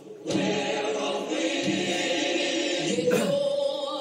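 Recorded gospel music with a choir singing, starting just after a short gap at the very beginning.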